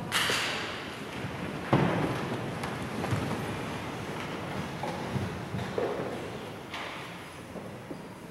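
A few knocks and rustles echo in a large church. The loudest is a thump a little under two seconds in, with a lingering echo after it.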